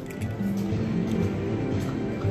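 Electronic slot machine music: a run of held, pitched notes from penny slot machines being played.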